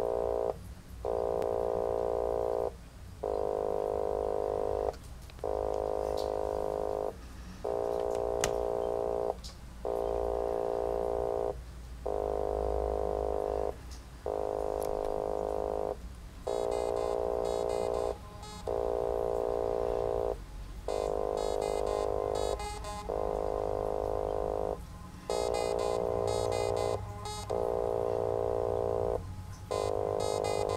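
littleBits Synth Kit modular synthesizer playing a looping sequence of sustained electronic notes, each about one and a half to two seconds long with short breaks between. From about halfway through, a high, fast chattering layer rides on top of each note.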